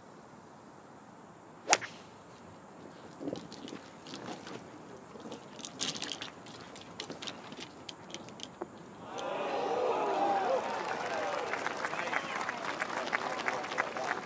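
A golf club strikes the ball off the tee with one sharp crack about two seconds in. A few seconds later a gallery of spectators breaks into loud cheering and shouting from about nine seconds in, as the ball finishes close to the hole.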